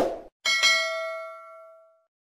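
Notification-bell sound effect for a subscribe-button animation: a short click right at the start, then one bright ding about half a second in that rings with several tones and fades away over about a second and a half.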